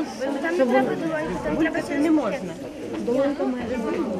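Many children talking at once, with overlapping chatter and no single voice standing out.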